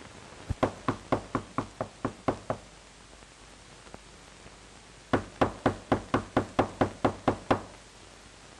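Knocking on a door: two quick runs of about ten knocks each, roughly four a second, the second run starting about five seconds in.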